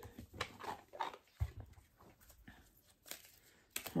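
Faint, scattered rustles and soft taps of an oracle card deck being shuffled and handled, with a light thump about a second and a half in.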